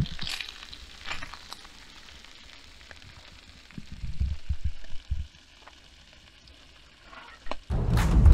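Bacon frying in a pan, a soft steady sizzle, with the spatula scraping and tapping as the strips are turned. A few dull low bumps come about four to five seconds in.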